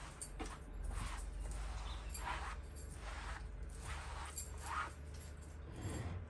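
A cloth wiping over chalk-painted upholstery fabric, a series of soft swishes as it clears off the dust left from sanding between coats.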